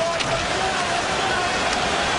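Steady crowd noise from a packed ice hockey arena during play.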